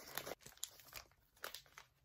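Faint crinkling and rustling of a bouquet's paper and plastic-film wrapping as it is handled and a ribbon is tied around it, in a few brief crinkles with quiet gaps between.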